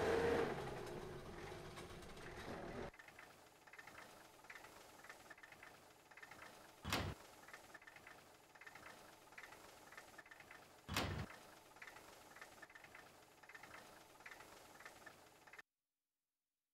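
Two dull thumps of a Hindustan Ambassador's car doors shutting, about four seconds apart, over a faint background. Before them, a fading sound cuts off about three seconds in.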